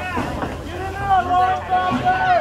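Voices calling out across a youth football field, with one long, drawn-out shout held for over a second through the second half.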